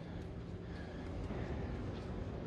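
Steady background noise of a large exhibition hall: a low rumble with faint, distant voices.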